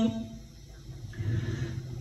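Pause in a chanted Quran recitation: the reciter's voice stops at once, leaving a low background rumble, and about a second in a soft breath is drawn before the next verse.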